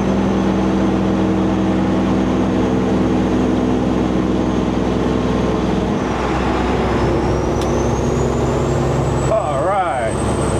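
A Peterbilt 389 glider's diesel engine pulls steadily at highway cruise, with road and tyre noise, through a tunnel and out of it; the drone shifts slightly about six seconds in. Near the end there is a brief wavering sound.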